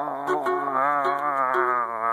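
A man singing one long held note with vibrato, over a plucked guitar.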